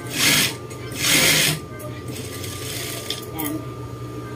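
Juki industrial sewing machine stitching in two short bursts of about half a second each, its motor humming steadily between them. A quieter rustle of the fabric being handled follows.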